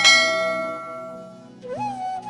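A bright bell chime, the notification-bell sound effect of a subscribe animation, struck once right at the start and ringing down over about a second and a half. It plays over soft flute music, whose melody rises again near the end.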